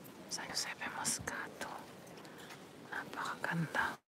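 Whispered speech: soft, breathy voices with hissy consonants, cutting off abruptly at the end.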